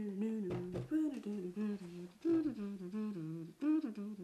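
A woman humming a short tune with her mouth closed, the same rising-and-falling phrase repeated several times.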